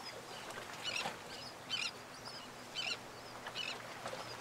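Birds chirping: short high calls repeated about once a second, faint over a steady background hiss.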